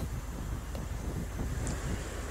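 Low, steady rumble of wind on an open outdoor reporter's microphone during a live feed.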